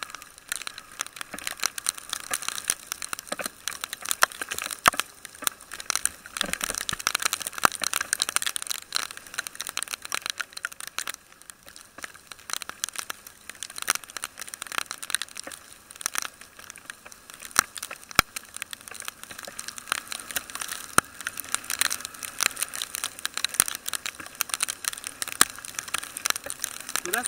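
Rain striking the housing of a motorcycle-mounted camera: a dense, irregular crackle of sharp ticks, with no engine note heard.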